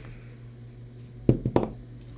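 A large die thrown onto a wooden tabletop, hitting and bouncing with a few quick knocks close together about a second and a half in, over a steady low hum.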